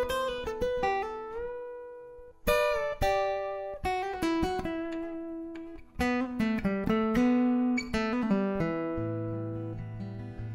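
Acoustic guitar played through a Fishman PowerTap Infinity pickup system, with its balance set toward the body sensors: plucked single-note lines and chords that ring and decay, fresh chords struck about two and a half and six seconds in, and a low bass note added near the end.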